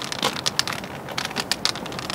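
Long white cane being swept and tapped across gritty asphalt, with footsteps: an irregular run of sharp clicks and scrapes, several a second.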